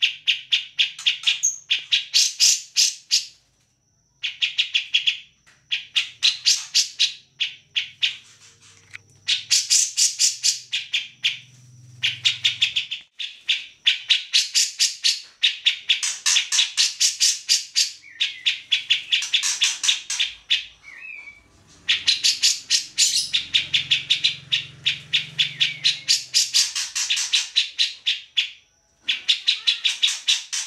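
Caged grey-cheeked bulbul (cucak jenggot) singing vigorously: long runs of fast repeated notes, each run lasting a few seconds, broken by short pauses.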